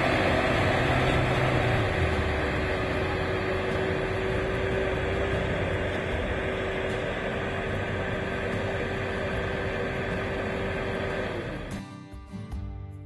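Pickup truck towing a loaded gooseneck trailer drives by on a dirt road. Its steady engine and road noise fades slowly as it pulls away, then cuts off shortly before the end.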